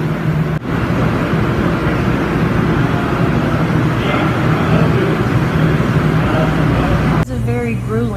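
Commercial kitchen ventilation running: a loud, steady rushing noise with a low hum under it. It starts suddenly just after the start and cuts off about a second before the end.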